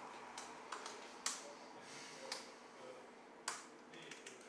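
Scattered keystrokes on a computer keyboard as a terminal command is typed: about five sharp, faint clicks spaced unevenly, the loudest about a second in and another near the end.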